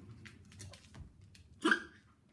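A single short, sharp vocal yelp about three-quarters of the way through, over a few faint scattered clicks.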